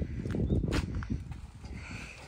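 Quick, irregular low thuds of a child's feet and a large dog's paws on a trampoline mat, thinning out in the second half, with one sharp click in among them.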